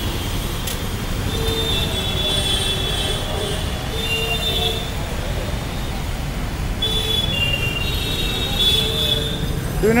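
Busy street noise: a steady low rumble with high-pitched squeals that come and go every second or so, and faint voices in the crowd.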